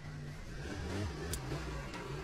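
A car engine running, a steady low hum that shifts in pitch.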